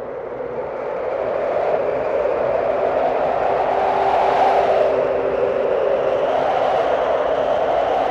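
Ambient noise intro of a black metal track: a rushing noise drone that fades up from silence and grows louder through the first half, then holds steady, with a faint steady low tone beneath it.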